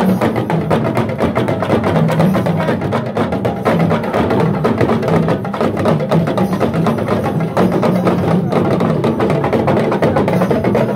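Live hand drums and percussion for an Egungun masquerade dance, beaten in a fast, dense, unbroken rhythm, with crowd voices mixed in.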